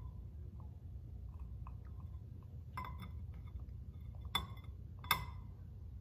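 A long utility lighter clicked several times at a glass candle jar, each sharp click followed by a brief glassy ring, as the wicks fail to catch. The clicks come unevenly, two close together about three seconds in and two more later.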